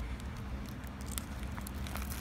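Small scissors of a SOG mini multi-tool snipping through the edge of a paper mailer envelope: a scatter of faint clicks and crinkles. A low steady hum runs underneath.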